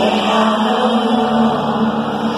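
Live pop concert sound heard from within the audience: voices singing held notes over the band's music, loud and continuous.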